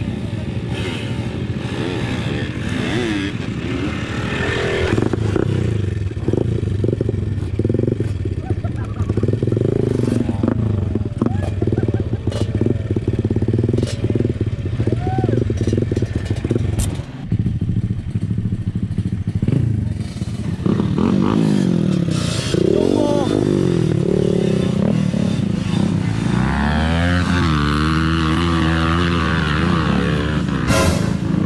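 Dirt bike engine running and revving on a rough trail, its pitch rising and falling as the throttle is opened and closed, with clatter from the bike over the ground.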